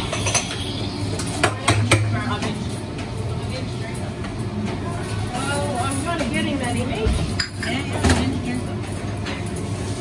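Busy café counter sounds: cups, jugs and utensils clinking and knocking, with background voices and a steady low hum from the equipment. A few sharper knocks stand out about a second and a half in and again near the end.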